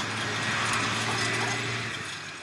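A tank's engine running with a steady low drone under a loud, continuous rush of noise, as the tank churns up dust.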